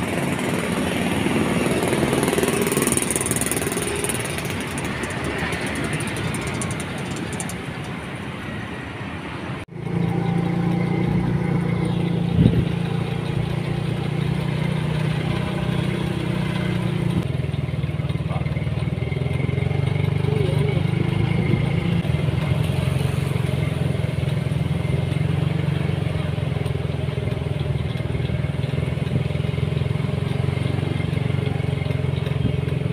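Street traffic and a motor vehicle's engine running steadily while moving. The sound drops out for an instant about ten seconds in, after which a steady low engine hum is the main sound.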